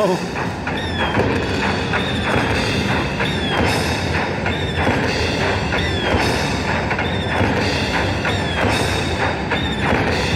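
Mighty Cash Xtra Reel slot machine playing its win count-up music as the credit meter rolls up, with a short falling chime repeating about once a second over a steady percussive beat.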